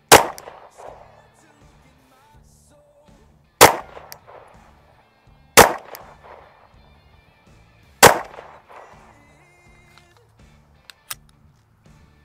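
Four single 9mm pistol shots from a Shadow Systems MR920, unevenly spaced a few seconds apart, each with a ringing echo. A short sharp click comes near the end. Background music runs underneath.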